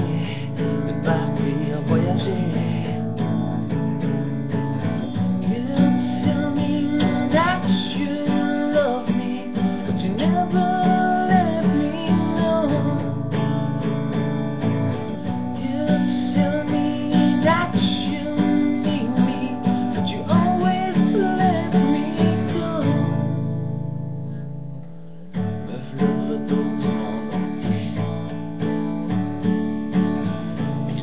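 Acoustic guitar strummed steadily, with a bending melody line carried over the chords. Near the end the playing thins to a low held chord for a couple of seconds, breaks off briefly, then starts again.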